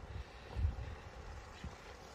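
Low, uneven rumble of wind on the microphone outdoors, strongest about half a second in, with a faint steady hum behind it.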